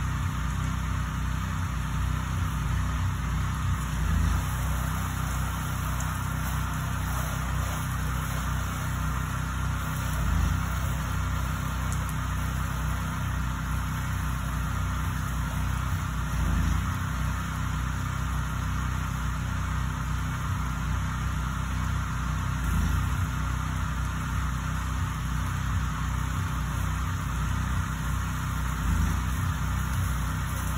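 Steady running hum of a small engine-driven wash pump, with an even hiss of spray from the soft-wash nozzle on the siding. The hum swells slightly about every six seconds.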